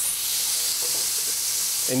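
Elk burger patties sizzling on a griddle at medium-high heat or a little above: a steady high hiss of meat frying in fat, swelling slightly at the start.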